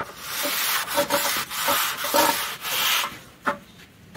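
Aluminium straight edge scraped along wet cement plaster while screeding the edge of a sunshade: a sharp tap, then a run of gritty rasping strokes for about three seconds, ending with a single knock.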